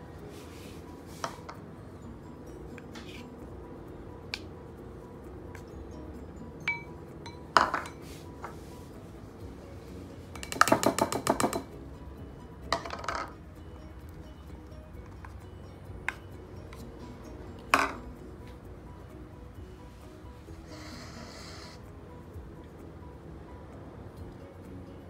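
Small ceramic bowls clinking and knocking against a wooden table and a mixing bowl as baking ingredients are tipped in: a scattering of separate knocks, with a quick rattle about halfway through and a short hiss near the end, over background music.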